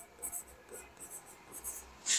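Chalk writing on a blackboard: a series of faint, short scratching strokes as letters are written.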